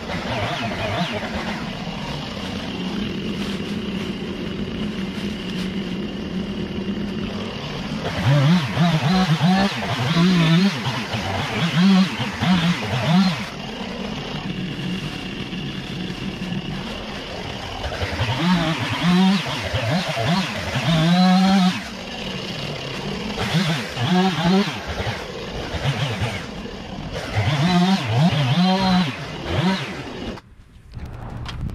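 Gas string trimmer engine running while cutting through vines and brush, its throttle repeatedly opened and eased off so the pitch keeps rising and falling.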